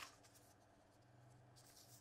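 Near silence: studio room tone, with faint rustling of thin Bible pages being leafed through.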